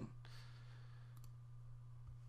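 Near silence over a steady low hum, with a faint computer mouse click about a second in as an entry is picked from a drop-down list.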